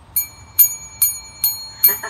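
A small metal bell struck five times in a steady rhythm, a little over two rings a second, each strike ringing on until the next.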